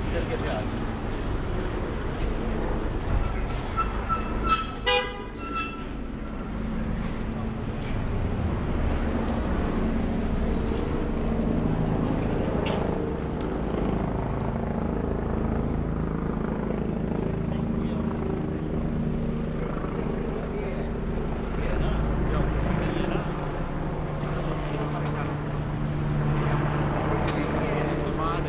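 Street traffic at a city junction: car and van engines running and passing, with people talking nearby. A brief high-pitched beeping or toot sounds about four to five seconds in.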